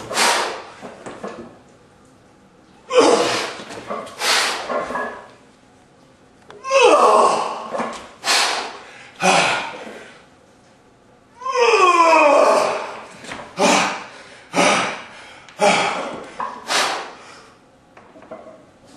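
A man's forceful breaths and grunts of effort while squatting under a heavily loaded barbell: sharp exhales come in clusters every second or so. About seven seconds in, and again about twelve seconds in, comes a longer groan that falls in pitch.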